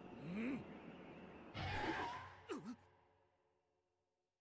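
A woman's breathy gasp of surprise about two seconds in, among other faint breathy voice sounds.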